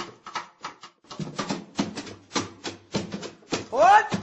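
Sharp percussive taps or clicks, several a second, marking the rhythm as the song starts. Near the end a horn note slides upward as the band comes in.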